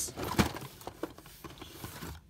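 Cardboard case and blister-carded Hot Wheels cars being handled: a sharp knock about half a second in, then light rustling and small clicks.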